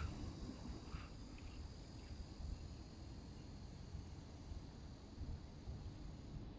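Faint outdoor ambience: a steady high insect drone from the grassy riverbank over a low rumble, with a couple of faint clicks.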